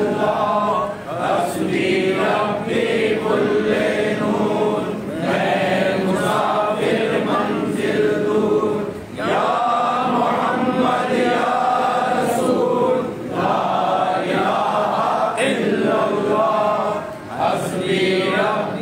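A group of voices chanting zikr in unison, a repeated devotional phrase that breaks briefly for breath about every four seconds.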